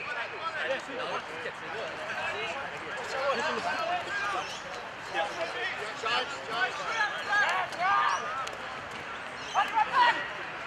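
Several men's voices calling out across an open football ground, overlapping and indistinct.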